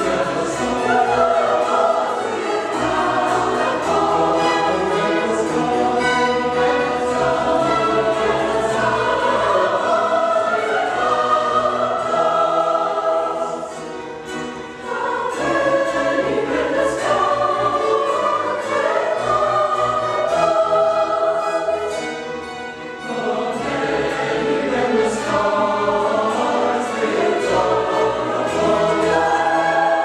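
Mixed choir singing with string orchestra accompaniment, sustained phrases with two short breaths of lower level partway through.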